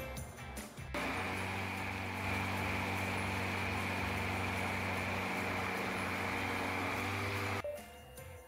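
Countertop blender motor running steadily as it purées frozen strawberries, mango and blueberries into a smoothie. It starts abruptly about a second in and cuts off suddenly near the end.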